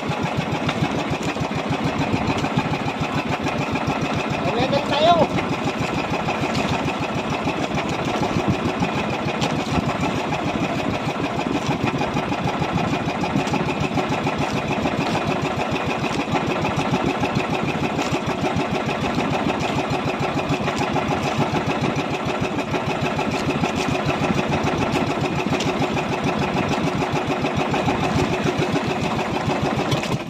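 Small boat engine of a motorized outrigger boat running steadily under way, a fast even beat with no change in speed.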